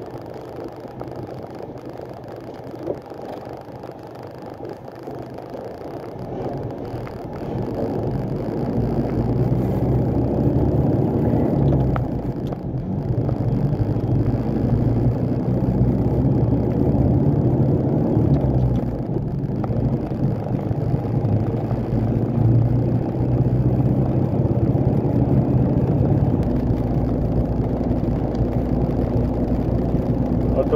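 Truck's diesel engine and road noise heard from inside the cab as it pulls onto the highway and gathers speed. The sound grows louder over the first ten seconds, then runs steadily, with two brief dips along the way.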